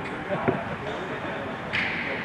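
A basketball bouncing on the court, with one sharp bounce about half a second in, amid players' voices. A brief, higher-pitched sound comes near the end.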